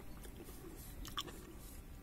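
Faint chewing of a soft, ripe, juicy Conference pear, with a few small wet clicks.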